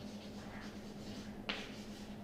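Chalk writing on a blackboard: faint strokes, with one sharp click of the chalk striking the board about one and a half seconds in, over a steady low room hum.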